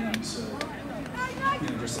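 Indistinct talking and spectator chatter, with a couple of short clicks early on.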